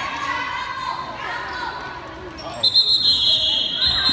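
Basketball game in a gym: spectators shouting and a ball being dribbled on the hardwood floor. A little after halfway, a long, shrill, high-pitched sound sets in and is the loudest thing heard.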